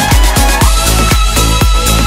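Electric violin playing a pop cover over an electronic dance backing track with a steady kick drum about four beats a second; the violin holds one high note from about half a second in.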